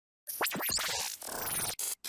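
Short music sting for an edited intro, with record scratching and sweeping pitch glides. It starts suddenly about a quarter second in, runs about a second and a half, and ends in a couple of short chopped bursts.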